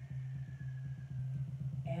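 A steady low-pitched hum, one unbroken tone that stops just after the end.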